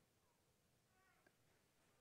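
Near silence: the sound drops out almost completely between phrases.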